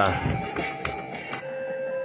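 Fruit King 3 fruit slot machine sounding held electronic beep tones during a double-up spin, with a new, lower tone coming in about a second and a half in. Two short clicks fall in the middle.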